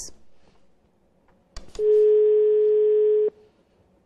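Telephone line tone over the studio's phone link: two clicks, then one steady tone about a second and a half long that cuts off suddenly. The tone is heard as the call to the phone guest apparently drops.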